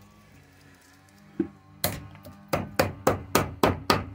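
Copper winding wire being pulled and worked out of a nebulizer motor's plastic housing by hand: one knock about a second and a half in, then a run of sharp clicks and snaps, about three a second, in the second half.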